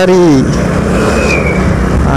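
Motorcycle engine running at road speed under loud wind rush over the microphone, after a voice trails off in the first half second.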